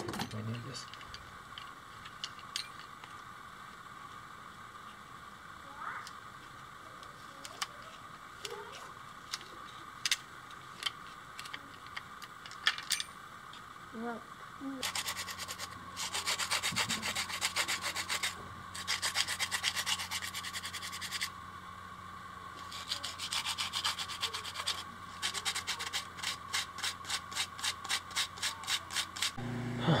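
Hand sanding of a propeller blade: rapid back-and-forth rubbing strokes in three runs, starting about halfway in and getting faster and more even toward the end. A few light handling clicks come before, and a steady low hum starts with the sanding.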